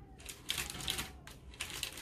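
Non-stick baking paper crinkling and rustling in a run of short crackles as set chocolate-covered strawberries are pulled off it.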